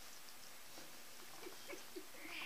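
A few faint, short squeaks from a pet, clustered in the second half.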